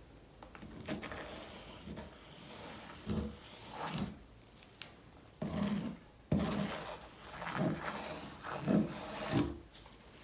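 A plastic wide-tooth comb dragged through wet acrylic pouring paint and scraping over a stretched canvas, in a series of uneven strokes, each a soft swish, some with a dull bump.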